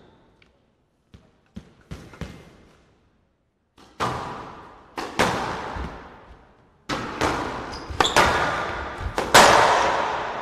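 Squash rally: the ball cracking off rackets and the court walls, each hit ringing on in a large echoing hall. A few faint taps come in the first three seconds, then about ten hard hits from about four seconds in.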